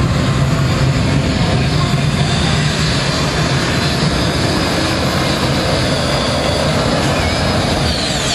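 Modified pulling tractor's engines at full throttle, dragging the weight-transfer sled. A loud, steady engine noise with a high whine.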